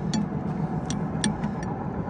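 Sharp metallic clicks, about five in two seconds at uneven spacing, as a wrench turns a pipe nipple extractor to back a broken threaded pipe nipple out of a surface cleaner's spray-bar hub, over a steady low hum.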